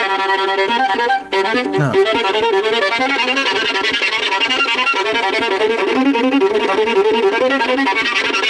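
Violin bowed continuously, the bow moved along the string while playing so that the tone colour shifts: a filtering effect. There is a brief break about a second in, then a fast run of short notes.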